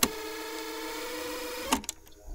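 A steady electrical buzz with hiss, cut off abruptly with a click after about a second and a half.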